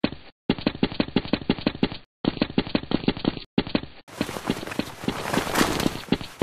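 Automatic gunfire sound effects: rapid bursts of about ten shots a second with short breaks between them, muffled at first, then from about four seconds in a fuller, brighter stream of fire without breaks.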